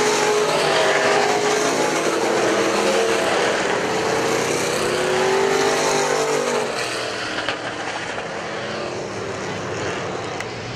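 Several dirt-track sport modified race cars racing, their engines rising and falling in pitch as they work through the turn. The sound fades about seven seconds in as the pack moves away.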